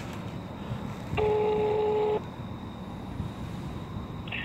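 A phone's electronic call tone heard through its speaker: one steady note held for about a second, starting about a second in, over a low steady rumble.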